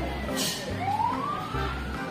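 A wailing siren over background music: its pitch falls, then rises again about a second in and holds high. There is a brief hiss about half a second in.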